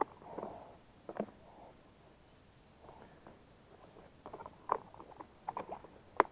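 Faint scattered clicks, light knocks and rustling of a hand handling a plastic container, with a small knock about a second in and a quick run of clicks near the end.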